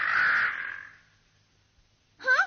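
A cartoon eagle's harsh, raspy screech that trails away about a second in.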